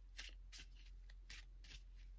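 A deck of Lenormand cards shuffled by hand: four faint, short swishes as cards slide off the deck.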